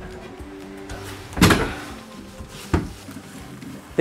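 An attic hatch being pushed open: a solid knock about a second and a half in and a lighter one near three seconds, over soft background music.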